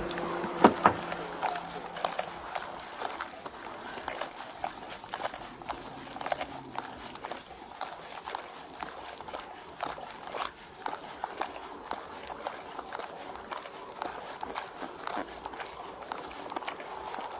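Footsteps of a person walking along a concrete sidewalk, picked up by a body-worn camera: a steady run of irregular knocks and clicks, with a couple of louder knocks in the first second.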